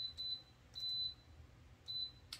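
Instant Pot Max control panel beeping as the cook time is stepped down with the button to 25 minutes for pressure canning: a few short high beeps, with a longer one about a second in.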